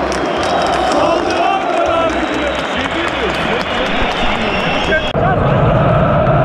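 Large football crowd in a stadium, many fans shouting and chanting close by. The sound changes abruptly about five seconds in to a fuller, denser crowd sound.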